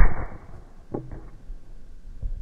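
One loud, sharp crack as a full-power wooden nunchaku strike lands on the head of a striking dummy, with a brief ringing tail. Fainter knocks follow about a second later.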